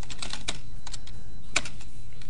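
Typing on a computer keyboard: irregular, separate key clicks as a line of text is entered, over a steady low hum.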